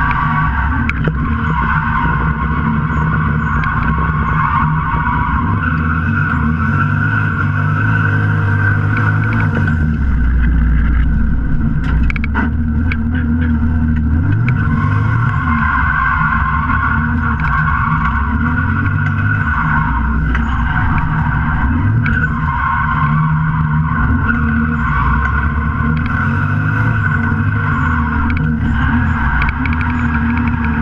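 Lexus GS300 drift car's engine revving up and down under hard driving, heard from inside the stripped, caged cabin, with tyres squealing in stretches of several seconds as the car slides.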